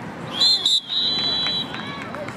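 Referee's whistle blown twice, a short shrill blast then a longer one of nearly a second, stopping play in a youth flag football game, with faint voices from players and onlookers underneath.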